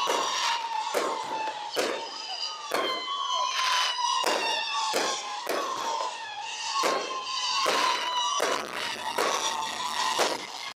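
Fireworks shells bursting overhead in a string of sharp bangs, about one or two a second, with crackle between them. A steady high tone runs underneath and slowly sinks in pitch.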